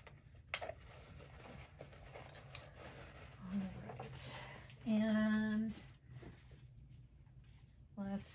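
A person's brief closed-mouth hum, held on one pitch for just under a second about five seconds in, after a shorter murmur, among faint handling clicks and rustles.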